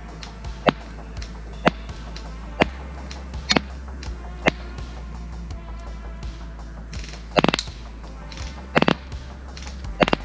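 Airsoft electric rifle (Specna Arms SA-H12) firing 0.28 g BBs: sharp single shots about once a second, then two short quick bursts near the end, over background music.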